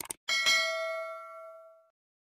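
A short click, then a bright bell ding sound effect that strikes sharply and rings out, fading over about a second and a half: the notification-bell chime of a subscribe-button animation.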